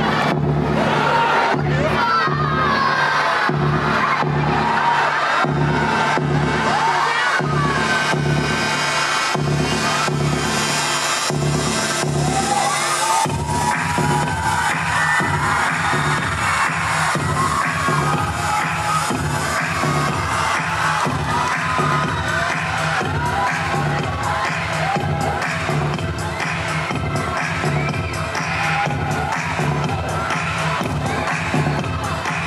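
Loud dance music with a steady beat, played in a large hall, with an audience cheering and shrieking over it. The music changes about halfway through.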